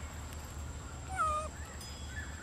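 A single short coo call from a long-tailed macaque about a second in: a clear tone that dips slightly in pitch.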